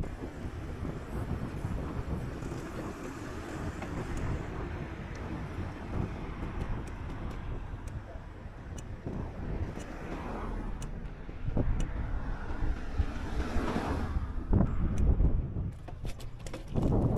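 Bicycle rolling along an asphalt road: steady wind buffeting the microphone over the low rumble of the tyres. A louder rushing swell builds and peaks about fourteen seconds in, and a few bumps and rattles follow near the end.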